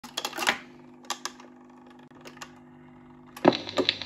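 1950s Dansette Major record player's tone arm mechanism clicking and clunking as the arm swings over the 45, over a steady low hum from the player. About three and a half seconds in, the stylus drops onto the record with a thump, followed by the crackle and hiss of the lead-in groove.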